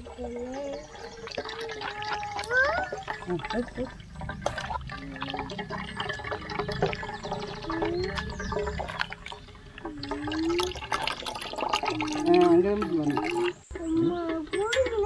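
Wet squishing of watermelon pulp squeezed by hand through a steel mesh strainer, with juice trickling into a steel pot, and frequent small clicks and knocks against the steel vessels.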